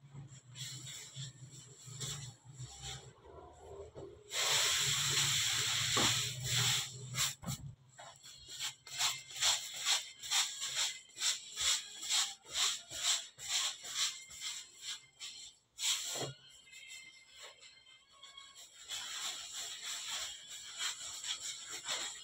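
Dough being rolled and worked by hand on a floured steel table: short swishing strokes about two a second. About four seconds in there is a loud steady hiss lasting some three seconds, and another hiss comes near the end.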